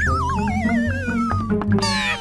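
Cartoon sound effect: a warbling tone sliding down in pitch over about a second and a half, a wobbly dizzy gag for stunned characters, over steady background music. Near the end comes a quick cluster of falling tones.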